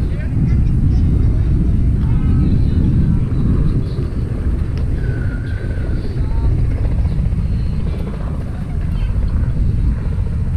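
Wind buffeting the camera's microphone: a loud, uneven low rumble that runs without a break, with faint voices behind it.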